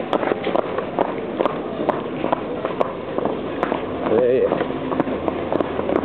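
A harness horse's hooves clip-clopping on a paved street in a quick, steady rhythm of about two strikes a second. A short, wavering voice rises over it about four seconds in.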